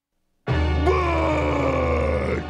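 A giant cartoon clown monster's long, loud roar, starting suddenly about half a second in and slowly falling in pitch, over a dramatic music sting.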